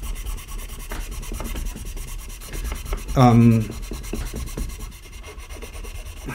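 A cloth rubbing over the bare wooden fretboard of an unstrung ukulele, a scratchy rubbing as the fretboard is wiped clean with a little oil. A short voiced hum cuts in about three seconds in.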